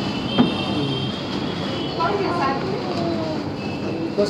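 Indistinct background voices over a steady hum of shop ambience, with one sharp knock about half a second in.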